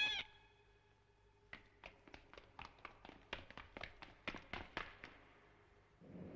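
A high, squeaky cartoon mouse voice cuts off right at the start. After a short pause comes a quick run of faint, short clicks, about fifteen over three and a half seconds, each with a brief ring.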